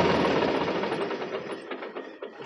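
A Solis Yanmar 5015 E tractor's diesel engine running with a rapid, even beat that fades steadily away over about two seconds.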